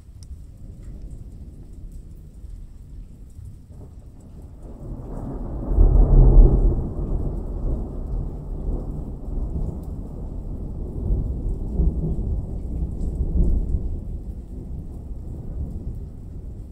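Thunder rolling over steady rain. A low rumble swells about five seconds in to its loudest, then rolls on with further smaller swells.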